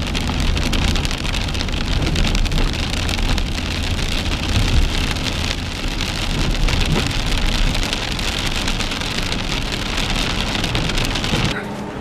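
Rain pattering densely on a car's windshield and roof, heard from inside the moving car, over a low rumble of engine and tyres on the wet road. It cuts off suddenly near the end.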